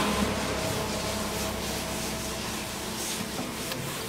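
A cloth rubbing over the bare wood of a carved gụ armchair seat, a steady rustling wipe. Liquid is being wiped on to bring up the grain as a finish would.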